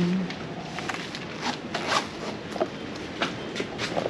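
Irregular light clicks and rustles of things being handled and packed into a bag, over a steady background noise.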